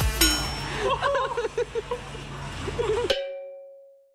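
Indistinct voices in a busy hall, then a single bell-like ding about three seconds in that rings out and fades away.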